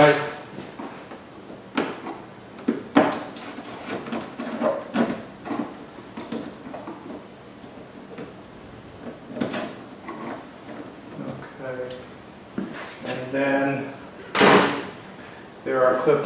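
Scattered clicks, scrapes and knocks of a screwdriver working the plastic screws and push clips out of the underside of a car's front bumper cover, with the sharpest knock near the end.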